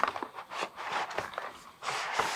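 Gel polish packaging being opened by hand: a run of small clicks and taps, then a rustling noise near the end.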